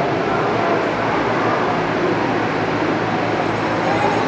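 Steady background noise of a hall: an even, continuous wash of sound with no clear voice or distinct event.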